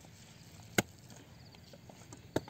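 A hand hoe chopping into grassy soil once: a single sharp strike a little before halfway through.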